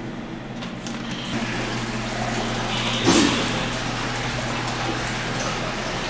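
Restroom flush: water rushing steadily for several seconds, with a brief louder burst about three seconds in, over a steady low hum.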